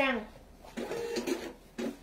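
Mostly speech: a woman's voice finishing a word at the start, then quieter talking about a second in, in a small room.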